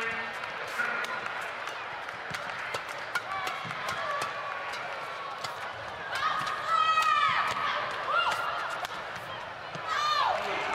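Badminton rally: repeated sharp clicks of rackets striking the shuttlecock and players' court shoes squeaking on the floor, with the loudest run of squeaks about seven seconds in, over a low arena crowd hum.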